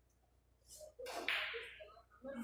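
Billiard balls struck hard: a sharp crack about a second in, followed by a short fading rattle.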